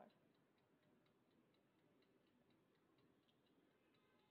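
Near silence with faint, steady ticking, about three to four ticks a second.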